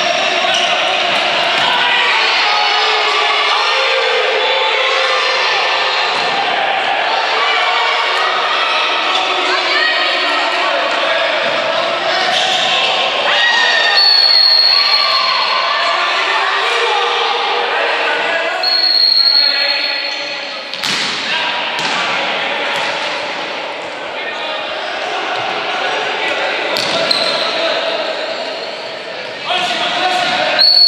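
Futsal game in an echoing sports hall: shouting voices, the ball thudding and being kicked on the hard court, and a referee's whistle blown in two short blasts about halfway through.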